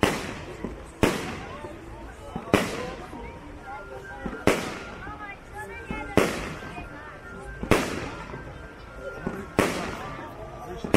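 Aerial firework shells bursting one after another: about seven loud bangs, roughly every one and a half to two seconds, each trailing off in an echo.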